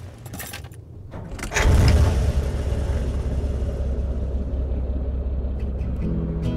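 A vehicle engine: faint clicks, then a sudden low rumble about a second and a half in that settles into a steady low running sound.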